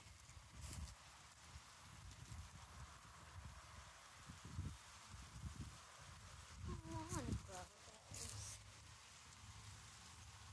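Faint rumble and rustle from a handheld phone moving close to garden plants, with a few light clicks. A brief falling, voice-like sound comes about seven seconds in.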